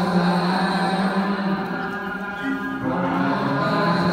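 Buddhist chanting in a slow, droning recitation held on long steady notes, moving to a new note about three seconds in.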